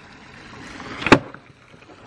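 Skateboard wheels rolling, growing louder, then one sharp, woody knock about a second in as the board strikes the skater's shin. The wheels are sticky and grip too hard.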